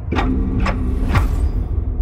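Trailer score: a heavy low rumbling drone under a held low tone, struck by about three sharp hits, the last about a second in with a falling sweep.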